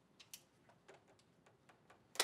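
Near silence, with a few faint, irregular clicks and taps from plastic RO tubing and its fittings being handled.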